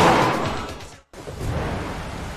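Storm sound effects: a loud rushing whoosh fades away, then cuts out abruptly about a second in. A steady hiss of rain follows.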